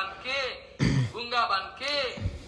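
A man clears his throat once, about a second in, with quieter speech around it.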